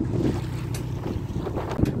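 Tour boat under way: wind rushing on the microphone over the low, steady noise of the engine and the water.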